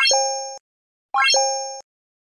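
Stock like-and-subscribe animation sound effects: a quick rising pop followed by a short two-note chime. It sounds twice, at the start and about a second in, each fading out within about half a second.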